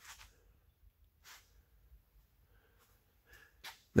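Quiet room tone broken by a few faint, short noises, about four in all.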